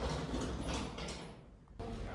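A rattling, scraping mechanical noise with small clicks, fading out about a second and a half in.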